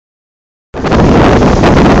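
Wind buffeting the camera microphone on the open deck of a ferry under way, a loud, steady rushing noise that starts abruptly just under a second in.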